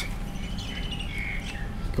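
Birds calling faintly in a garden, a few short high calls over a steady low background hum.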